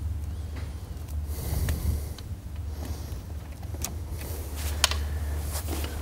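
Soft rustling of a layout blind's fabric cover and a few faint clicks of its metal door frame and locking pin being fitted, over a steady low hum.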